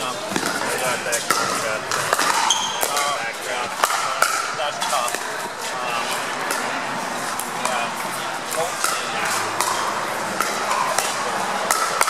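Pickleball paddles hitting a plastic ball in a quick doubles rally: many sharp pops at irregular intervals, over steady crowd chatter.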